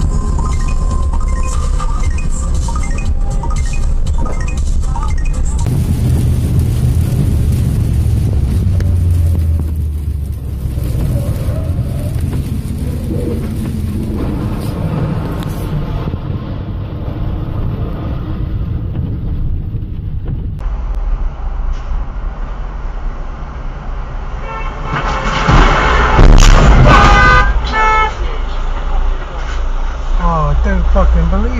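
Low road and engine rumble from a run of dash-cam clips. Near the end a vehicle horn honks loudly several times in a row, the loudest sound in the stretch.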